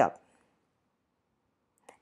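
Near silence between phrases of a woman's narration, with a faint single click just before her voice resumes.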